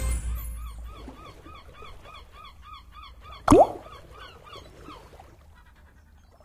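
Online slot game sound effects. The tail of a win fanfare fades out, then a soft chirping effect repeats about three times a second. About three and a half seconds in comes a sharp click with a quick rising blip.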